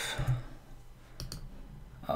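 Two quick clicks of computer input a little over a second in, as a name is entered in a web app's dialog.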